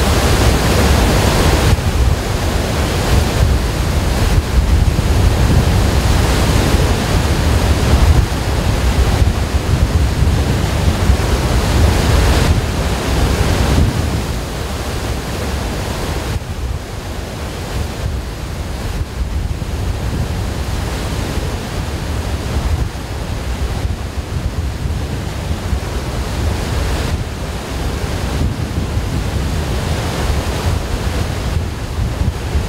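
Loud, steady rushing of a large volume of released water pouring down a concrete dam spillway, with a heavy low rumble. About halfway through it becomes quieter and duller.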